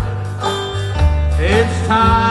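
Live country band music: a strummed acoustic guitar over bass and a steady beat about two a second. In the second half a singing voice slides up into a held note.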